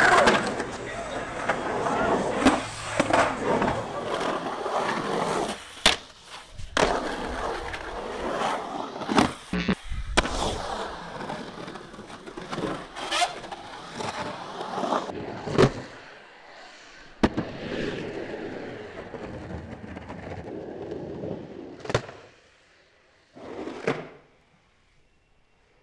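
Skateboard wheels rolling and carving across the concrete of an empty swimming pool, with several sharp clacks and scrapes of the board and trucks striking the coping. The rolling dies away about two seconds before the end, then a short burst of board noise.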